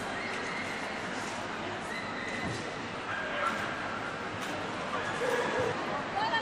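Busy dog show hall: people talking all around, with dogs barking and whining in the background.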